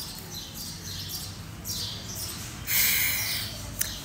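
Café ambience: a steady low hum with faint bird chirps, then a loud hiss lasting about a second near the three-second mark.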